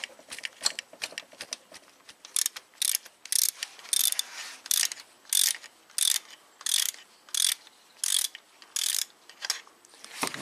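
Hand ratchet wrench backing out the bolt of a camshaft reluctor wheel. After a few scattered clicks, the pawl clicks in a short burst on each return stroke, about two strokes a second.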